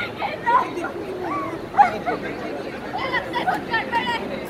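Several people's voices giving short, sliding cries over background crowd chatter.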